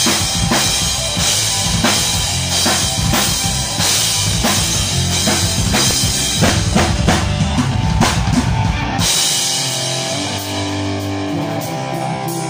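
Live rock band playing amplified: a drum kit with bass drum keeps a steady beat under electric guitar. About nine seconds in, the drums and deep bass stop suddenly and only held chords carry on.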